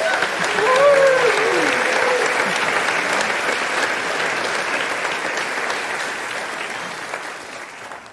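Congregation clapping and cheering, with one voice whooping up and down about a second in. The clapping slowly dies away toward the end.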